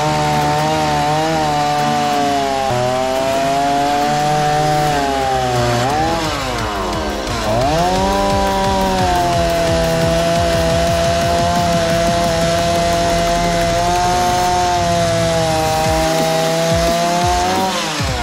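Handheld corded electric saw cutting through old weathered boards: a steady motor whine that sags sharply in pitch as the blade loads up about seven seconds in, then recovers and holds steady to the end of the cut.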